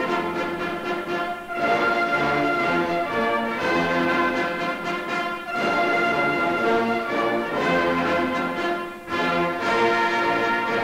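An anthem played by an orchestra with prominent brass, in broad phrases with short breaks about every four seconds.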